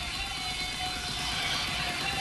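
Steady background noise with a faint constant hum.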